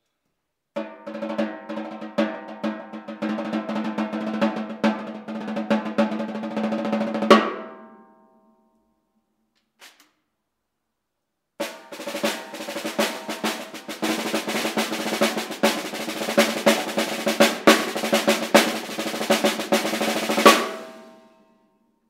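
Ludwig LM400 Supraphonic snare drum, a chrome-plated seamless aluminium shell, played with sticks with the snares on: two passages of fast rolls and strokes with a pause between. Each passage ends on a loud accent that rings out for about a second, with the shell's steady metallic ring under the strokes.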